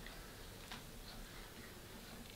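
Quiet crochet handling: a few faint, irregular clicks from a metal crochet hook working yarn through a treble stitch, over a low steady hum.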